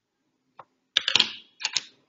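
A few quick taps and clicks of computer keyboard keys in three short clusters, the loudest about a second in.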